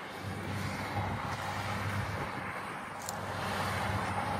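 Case IH Quadtrac tracked tractor working across the field some way off, pulling a cultivator: a steady low engine drone.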